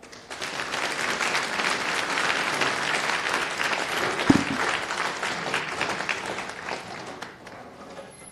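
Audience applauding, swelling within the first second and slowly fading toward the end. A single thump about four seconds in.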